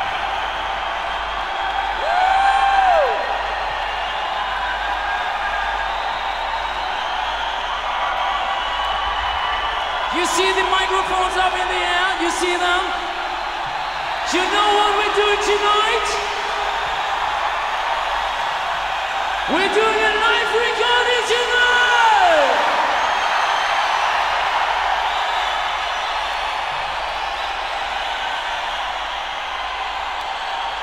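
Live rock concert crowd cheering between songs, a steady roar under several long, held wordless shouts that fall away at the end, the loudest about twenty seconds in.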